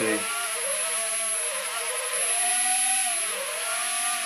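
The four small electric rotor motors of an Air Hogs Millennium Falcon toy quadcopter whirring at low throttle. Their several whines rise and fall in pitch separately as the control sticks shift power between the fans to tilt it.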